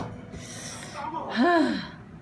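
A woman's breathy in-breath, then a short wordless voiced sound, like a "hmm", rising and falling in pitch about a second and a half in.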